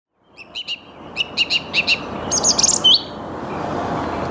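Song thrush singing: a short note repeated several times in quick pairs, then a burst of high twittering and a final sliding note near the three-second mark, over steady background noise.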